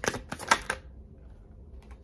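Tarot cards clicking as a deck is flicked through in the hand: a quick run of sharp clicks in the first second, the loudest about half a second in.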